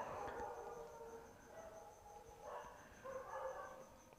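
Dogs howling faintly in two long, drawn-out stretches, the second starting about two and a half seconds in.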